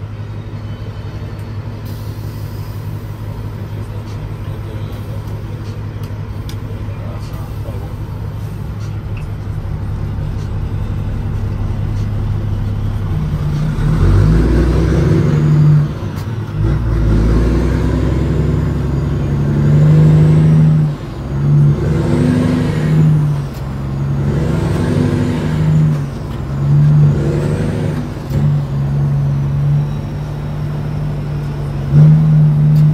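Peterbilt 379's Caterpillar 3406E diesel heard from inside the cab, idling steadily, then pulling away from about halfway through with the revs rising and dropping five times as the driver shifts up through the 18-speed gearbox. A high whistle climbs and falls with each rev.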